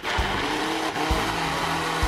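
Personal bullet-style blender switched on and running steadily, its motor whirring as it purées a smoothie of greens, fruit and juice.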